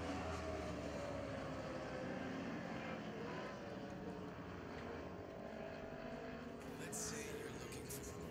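Lightning Sprint cars' 1000cc motorcycle engines running at easy, low revs on a slow lap after the finish. One car's engine note sinks and fades as it moves away past the stands, with others heard faintly across the track.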